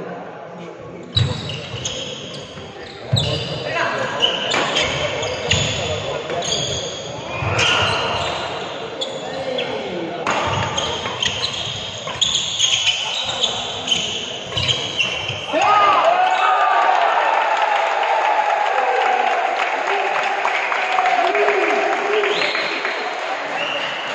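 Badminton doubles rally: rackets striking the shuttlecock roughly once a second, with footfalls on the wooden court. A few seconds before the end the hitting stops and voices call out steadily.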